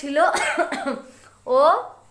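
A woman speaking Bengali, a few words, with a short rough, noisy stretch in her voice in the first second.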